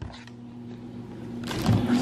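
Steady low hum of the cooling fans in a road case of battery uplights, running because the lights are charging. About one and a half seconds in, a brief rustle and a low thump of handling join it.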